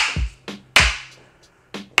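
Two sharp clacks of training sticks striking each other, about three-quarters of a second apart, with a fainter tap near the end. Soft low thuds of bare feet stepping lie between them.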